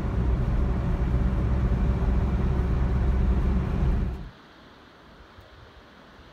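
A car driving along a highway: steady low road and engine rumble. It cuts off abruptly about four seconds in, leaving only a faint outdoor background.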